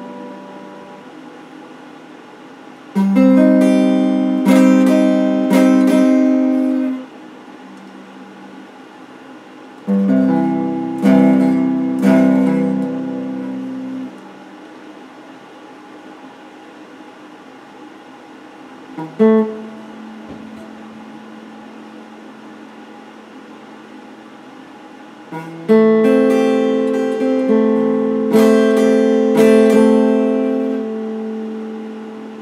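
Electric guitar strummed in three chord phrases of a few seconds each. Each phrase is followed by a pause in which the last chord rings on and fades, and a single plucked note comes a little past the middle.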